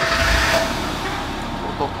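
Vintage Fiat 500's engine started with the key: it catches with a loud burst and settles into a steady low idle.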